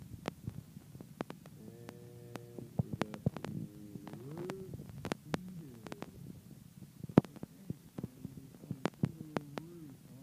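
Irregular light clicks and knocks from a handheld recording device being moved and handled, the loudest about seven seconds in. A faint wavering pitched sound rises and falls in the background a few times.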